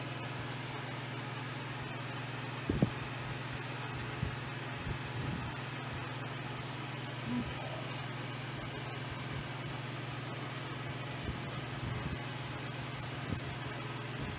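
A steady low hum in the room, with a few faint soft knocks and rustles as a crumbly butter, flour and sugar topping is scattered by hand from a stainless steel bowl onto a casserole dish. The clearest knock comes about three seconds in.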